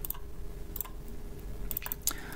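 A few faint computer mouse clicks over a low steady room hum: one single click, another a little under a second in, and a quick cluster near the end.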